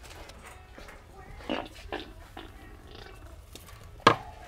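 Two short prank fart sound effects, about a second and a half and two seconds in, over low store background noise.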